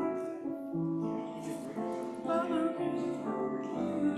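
Keyboard music with held chords that change every second or so, and a short wavering tone a little past the middle.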